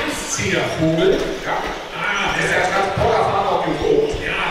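Indistinct talking, with scattered short low knocks.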